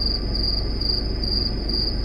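A cricket chirping, about three high-pitched chirps a second in an even rhythm, over a low steady hum.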